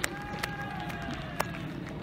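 Faint, distant voices on an outdoor football pitch, with one long, drawn-out call through the middle and a few light clicks.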